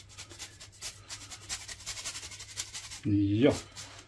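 A wedge of pecorino romano grated on a handheld flat metal grater: quick, repeated rasping strokes, several a second, stopping about three seconds in.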